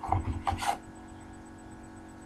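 Clear plastic bag crinkling as it is handled, in a few short bursts within the first second.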